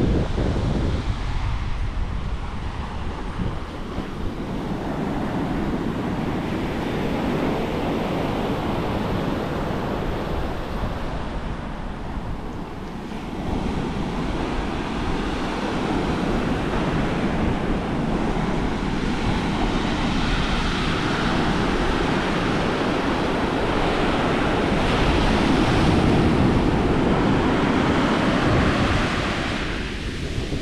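Atlantic surf breaking and washing up the sand, a continuous wash that swells and eases over several seconds, with wind buffeting the microphone.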